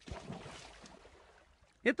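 Studio audience crowd noise that starts abruptly and fades away over under two seconds.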